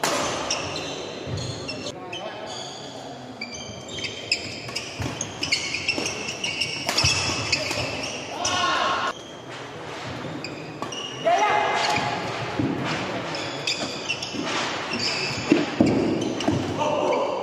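Badminton doubles play on a wooden court: shoes squeaking sharply again and again, and rackets striking the shuttlecock during rallies, with voices and calls ringing in a large hall.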